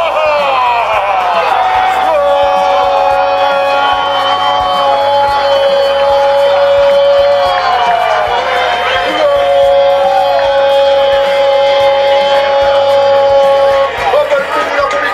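A football commentator's long, drawn-out goal cry, held on one high pitch for several seconds at a time. The pitch drops away and the cry starts again about eight to nine seconds in, over music.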